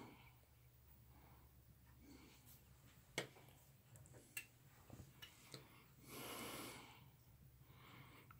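Near silence: room tone with a few faint clicks and a soft breath about six seconds in.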